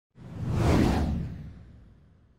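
A single whoosh sound effect with a deep rumble beneath it, swelling quickly and then fading away over about two seconds.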